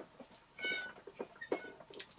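Red Miele S7 upright vacuum cleaner squeaking as it is handled: one short high squeak under a second in, then fainter brief ones near the end.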